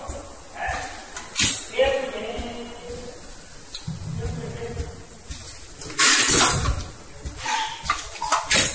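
Indistinct voices talking over a pad printing machine at work, with a sharp click about a second and a half in and a short burst of hissing noise about six seconds in.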